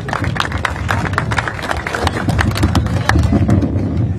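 Audience applauding: many hands clapping irregularly and densely.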